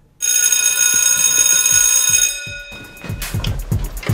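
A loud, high bell-like ringing starts suddenly and lasts about two seconds before fading out; about three seconds in, music with a drum beat begins.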